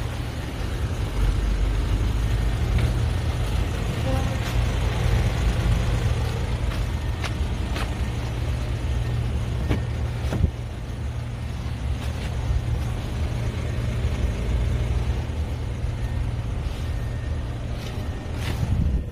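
Steady low rumble under a hiss of outdoor noise, with a few short clicks. One sharp click about ten seconds in comes as a car door is opened.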